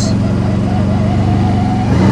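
CFMoto CForce 1000 ATV's V-twin engine running at a steady pitch while the quad rolls along, with a faint thin whine above the engine note.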